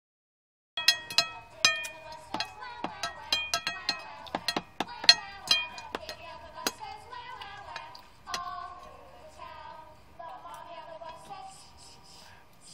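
Cutlery and dishes clinking at a meal table: a quick, irregular run of sharp, ringing clinks about a second in, thinning out after about six seconds, over a song playing in the background.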